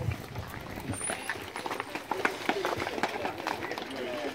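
A crowd walking on asphalt: many irregular footsteps and shoe clicks, with murmured voices in the background.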